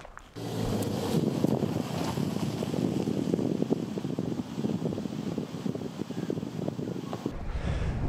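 Subaru Outback driving slowly along a gravel road, its tyres crunching steadily over loose stones. The sound stops abruptly near the end.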